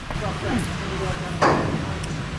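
Faint voices over a steady low hum, with one sharp knock about one and a half seconds in.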